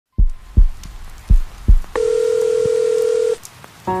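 Sound-effect intro of a song: two low double heartbeat thumps, then a long steady electronic beep like a heart monitor's flatline, which cuts off sharply. Near the end the music begins.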